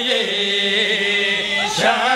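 A man chanting a qasida, a devotional praise poem, in long held notes, his voice sliding and breaking briefly near the end before settling back onto a held tone.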